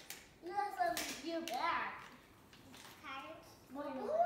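Young children's high-pitched voices: wordless squeals and chatter in short bursts, mostly in the first half, with a few sharp clicks or taps in between.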